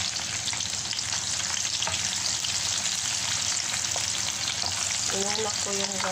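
Sliced garlic sizzling in hot oil in a frying pan: a steady, dense crackle of fine pops.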